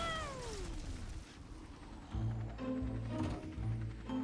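A character's cry in a cartoon: one long wail gliding steadily down in pitch over about a second as the helicopter falls. About two seconds in, background music with low, repeated bass notes takes over.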